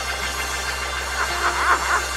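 A steady low hum, with faint voices heard briefly in the second half.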